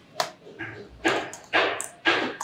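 A dog barking in a steady run, about two barks a second.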